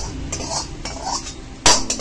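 A metal ladle scraping and clinking against a kadhai as food is scooped out onto a plate, with a sharp, loud clang near the end.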